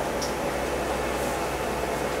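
Steady fan-like hiss with a low hum, typical of air conditioning or an equipment cooling fan in a small treatment room.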